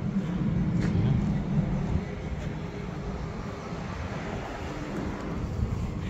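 Outdoor street noise: a low rumble, louder for the first two seconds and then easing off.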